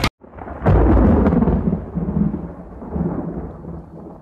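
Thunder-like rumble used as a sound effect: it swells in, is loudest about half a second in, then rolls on and slowly dies away.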